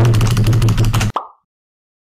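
Loud edited-in sound effect: a fast run of clicks over a steady low rumble that cuts off about a second in, followed by a short pop and then silence.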